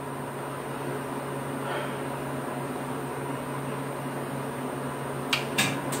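Steady low machine hum of room noise, like a fan or an appliance running, with two short clicks near the end.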